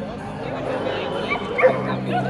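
A dog barks a few short times in the second half, the loudest bark just before the end, over people talking.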